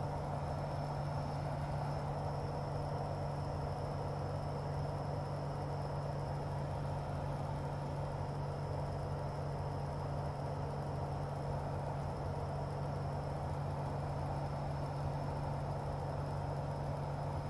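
Steady drone of a Sonex Waiex's Corvair 3.0 air-cooled flat-six engine and propeller in level cruise, heard from inside the cockpit with wind noise. A thin high whine runs steadily over it.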